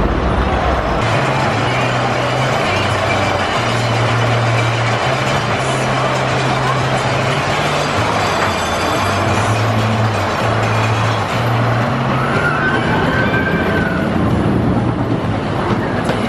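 Giant Dipper wooden roller coaster train rumbling along its wooden track, a continuous clattering roar, mixed with amusement-park ride music carrying a low stepping bass line.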